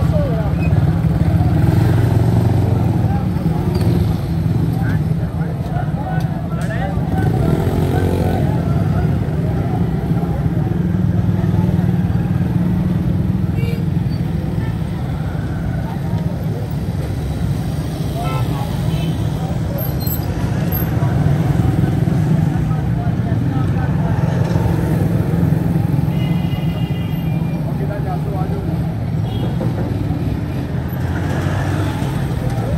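Busy street traffic: small motorcycle and motor-rickshaw engines running close by in a continuous low rumble, with voices of people around.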